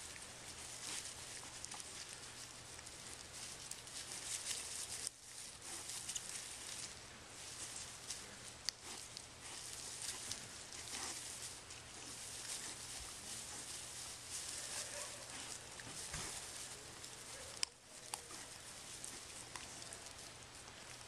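Wild hog rooting through dry grass, a faint, uneven rustling and crackling of stalks as it feeds. Two sharp clicks stand out, about nine seconds apart.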